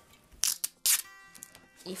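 Clear packing tape being pulled off its roll: two short, loud rasps about half a second and a second in, then a quieter buzzing peel.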